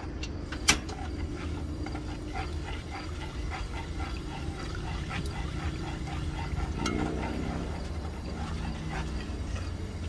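A spoon stirring and scraping around an aluminium pot of chicken oil, with small repeated ticks over a steady low hum. A sharp click comes about a second in, and a short pitched sound about seven seconds in.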